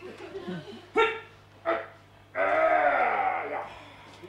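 Squawks from a yellow rubber squeak toy handled by a clown: two short squawks about a second apart, then a longer one that falls in pitch.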